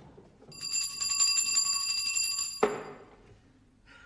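A small brass handbell shaken hard, its clapper striking rapidly in a steady ring for about two seconds. A single loud thump cuts it off.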